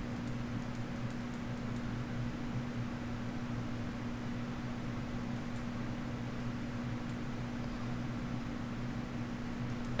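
Steady low hum of room tone with one constant tone in it, and a few faint light ticks in the first two seconds.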